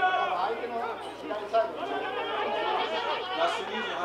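Several voices talking and calling out over one another: sideline chatter from players and spectators while a play runs. A short, sharp louder moment comes about one and a half seconds in.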